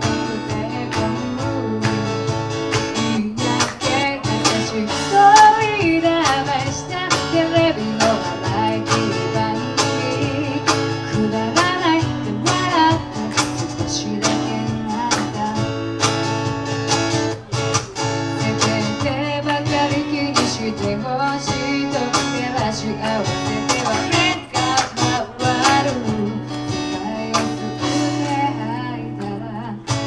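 Live band music: a woman singing a song over strummed acoustic guitar, with cajon percussion and a second, electric guitar.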